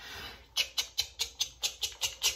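Insect picture cards being shuffled around in a bowl: a quick run of light rustling clicks, about six a second, as the next card is drawn.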